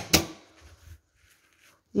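Industrial sewing machine giving a last couple of sharp stitching strokes and stopping within about half a second.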